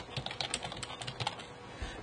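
Rapid, irregular keystrokes on a computer keyboard, fairly faint.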